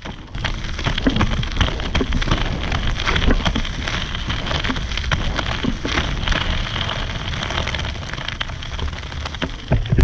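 Large 150 mm inflatable off-road inline skate wheels rolling fast over loose gravel: a steady, dense crunch and crackle of small stones under the wheels.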